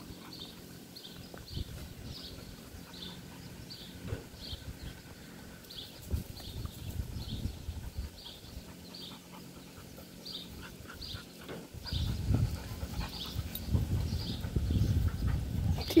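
Dogs playing on straw-covered ground, with scuffling and some panting that grow louder in the last few seconds. Short high chirps repeat about twice a second throughout.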